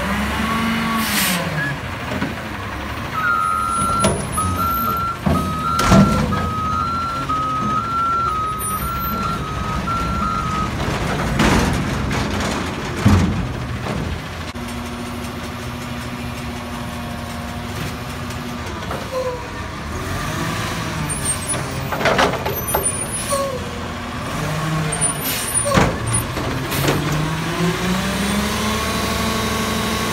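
McNeilus front-loader garbage truck at work: the diesel engine revs and falls as it drives the hydraulic arms, with metal bangs and hisses from dumpsters and air brakes. There is a run of reversing beeps lasting about seven seconds, starting about three seconds in. Near the end the engine revs up again as the arms lift the next dumpster.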